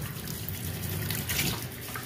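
Water running from a faucet into a utility sink and splashing on a microfiber towel held under the stream. The towel, stiffened by cured ceramic coating, does not soak the water up, so it pools and runs off.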